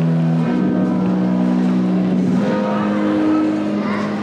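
Music over a sound system, with long held notes that step to a new pitch every second or two.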